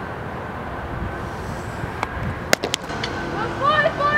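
Steady outdoor field noise, with a few sharp clicks about two and a half seconds in and high rising-and-falling calls starting near the end.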